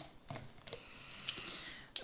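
Plastic lid of a tub of latex binder being worked open by hand: a few faint clicks, then a soft scraping of plastic in the second half.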